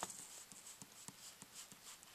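Faint pen on graph paper: light ticks, about three or four a second, with a soft scratch as the tip is tapped and moved across the grid.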